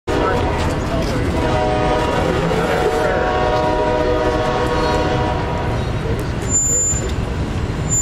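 Heavy machinery noise as a streetcar is rolled off a flatbed trailer onto rails: a steady low rumble under a droning whine that fades out about six seconds in, with a brief high beep soon after.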